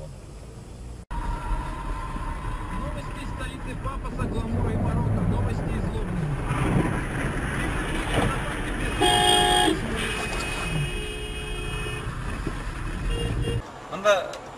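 A car horn honks once, briefly, about nine seconds in, over the steady noise of road traffic.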